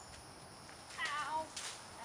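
A short, high-pitched wavering cry about a second in that falls in pitch at its end, followed by a brief hiss, over a faint steady high insect drone.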